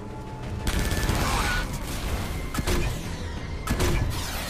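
Film battle sound mix: gunfire from a boat-mounted deck gun over a dense rush of noise, starting about a second in, with sharp reports near the middle and near the end.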